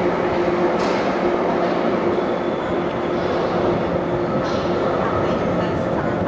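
A London Underground 1972 Stock deep-tube train pulling out of the platform and running off into the tunnel. It makes a steady rumble with a constant low hum, and brief hisses come shortly after the start and again about four and a half seconds in.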